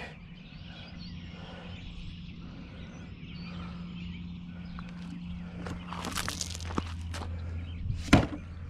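Footsteps crunching on loose gravel, with a few sharper crunches over a second past the middle, over a steady low hum.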